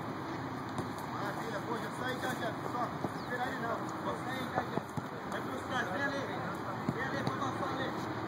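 Distant, overlapping voices of footballers calling out on a training pitch, with several short sharp thuds of a football being kicked.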